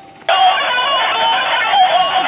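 Electronic doorbell sounding a chirping bird-call tune through its small speaker, starting suddenly about a third of a second in and running on.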